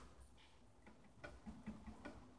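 Near silence between guitar phrases, with a few faint, irregular clicks of a pick on muted electric guitar strings in the second half.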